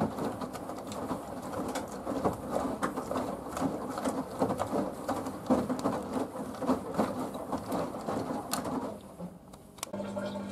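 Samsung WW90K5410UW front-loading washing machine's drum tumbling wet laundry through water: an uneven sloshing and splashing that dies down about nine seconds in as the drum stops turning.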